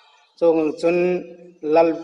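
A man speaking in a measured reading voice, starting after a brief pause and breaking once between phrases.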